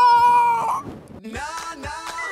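A man's drawn-out, high-pitched shout of "I want to eat!" held for under a second and trailing off. About a second later a tone glides upward into held notes of background music.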